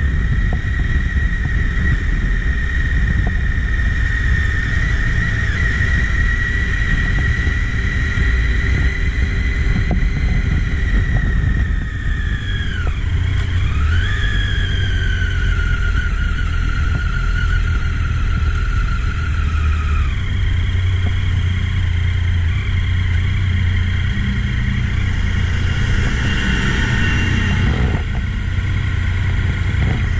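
Motorcycle engine running at low road speed, heard from on the bike over a steady low rumble. Its note falls as the bike slows about twelve seconds in, picks up again, then eases off and settles lower around twenty seconds.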